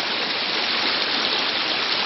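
Steady, even rush of running water.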